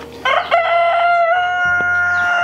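A rooster crowing: one long, held crow that starts about a quarter second in and steps slightly in pitch partway through.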